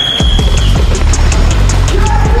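Background music: a deep bass comes in about a quarter second in under a quick, steady ticking beat, with a high held note at the start.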